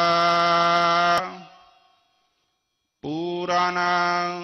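A voice chanting Sikh scripture (Gurbani, a hymn in Raag Suhi) holds one long, steady note that stops about a second in. After a second or so of silence the chant starts again.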